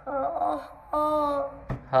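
A voice sounding out Vietnamese spelling syllables for the letter h: two drawn-out, steady-pitched syllables.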